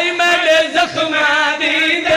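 A man chanting a lament into a microphone in long, wavering sung notes, amplified over a loudspeaker, with other men's voices joining in.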